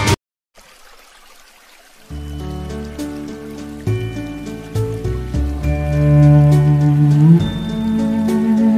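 The intro music cuts off right at the start. After a short gap comes faint rain with scattered drips, then slow instrumental background music with long held chords enters about two seconds in and keeps going over the rain.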